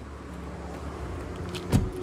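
A BMW X1's front door is shut, with one solid thud about three-quarters of the way in, over a steady low rumble.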